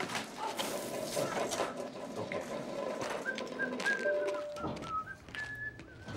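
Comic sound effect of tweeting, whistling birds circling a knocked-out head: the cartoon sign of being dazed after a collision. Some brief clatter comes in the first couple of seconds.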